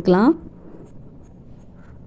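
A woman's voice finishing a sentence in the first moment, followed by faint, steady background noise with no distinct events.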